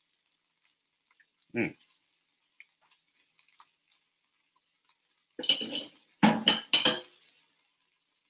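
Kitchen utensils and dishes clinking and clattering several times, between about five and a half and seven seconds in. Before that, sparse faint crackles come from brisket heating on a hot electric griddle.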